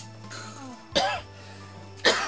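A sharp knock as a bamboo pole is jabbed down into a spike-trap pit, then a short cough-like vocal sound about a second in, over a steady low hum.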